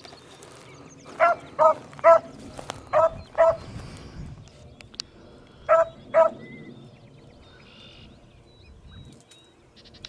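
Beagle baying while running a rabbit's scent: short, high barks, five in quick succession in the first few seconds and two more about six seconds in.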